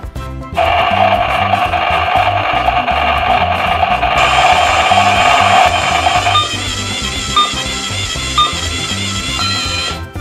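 Toy blender's electronic blending sound, a steady whirring tone that starts about half a second in and shifts about four and six seconds in, with short beeps about once a second near the end. Background music with a steady beat plays underneath.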